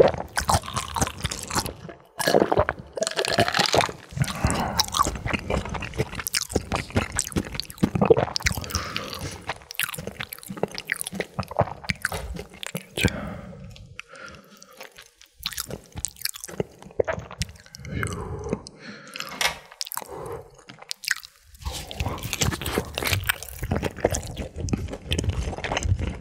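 Close-miked chewing and crunching of crisp fried food, a dense run of wet mouth sounds and crackles that thins out to a quieter spell about halfway through before the chewing picks up again.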